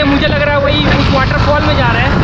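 Wind rushing over the microphone of a moving motorbike, a dense steady rumble with a man's voice talking over it.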